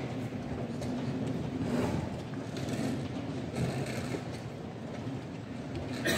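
Steady background noise of a large tournament hall: indistinct distant chatter with a few faint clicks.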